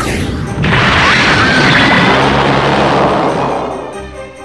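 A loud boom sound effect: a dense, noisy blast that hits about half a second in and dies away over about three seconds, over music.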